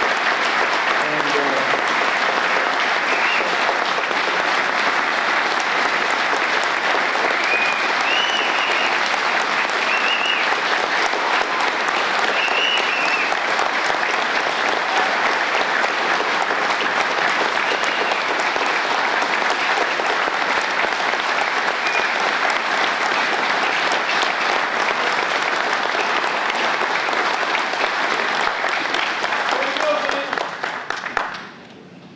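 Audience applauding steadily, with a few short cheers rising above the clapping.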